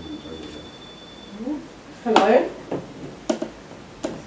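A person's voice, short indistinct utterances, loudest about two seconds in, over a steady high electronic tone that stops about a second and a half in.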